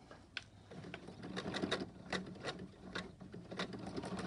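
Janome household sewing machine starting up about a second in and running, free-motion stitching through fabric: a steady motor hum with irregular needle clicks.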